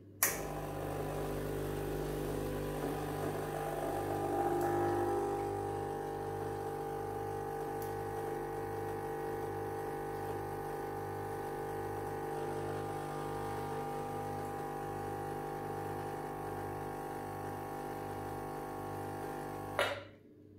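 Gaggia espresso machine's pump running through an espresso shot: it switches on with a click, hums steadily with a slight rise a few seconds in, and cuts off with another click near the end.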